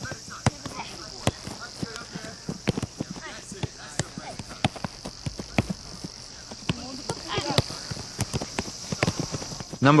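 Soccer balls struck by players' feet in a one-touch passing drill: a string of irregular sharp thuds, with faint voices of players and a steady high hiss behind them.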